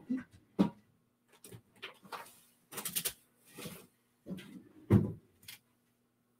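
Cardstock and craft supplies handled on a work mat: a string of light taps, knocks and paper rustles, the sharpest knocks about half a second in and near the five-second mark, over a faint steady hum.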